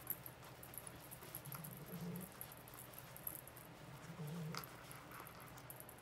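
Faint, soft rustling and squishing of polyester fiberfill being pushed by hand into a crocheted pumpkin, with a few light ticks. A brief, faint low sound comes twice, about two seconds in and again past four seconds.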